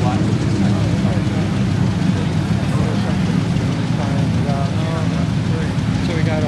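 Background voices talking over a steady low rumble, with no single clear source.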